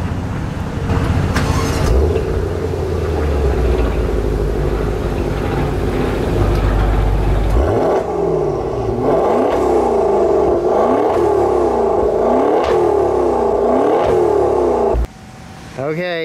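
The Ferrari-built 3.8-litre twin-turbo V8 of a 2020 Maserati Quattroporte GTS, heard at the exhaust, running with a deep steady rumble. About eight seconds in it is revved in a series of quick throttle blips, each a short rise and fall in pitch, until it cuts off about a second before the end.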